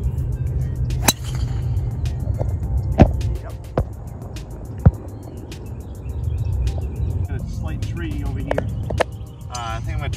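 A golf driver striking the ball with a sharp crack about a second in, followed by two more sharp knocks, the loudest just before five seconds in, over background music.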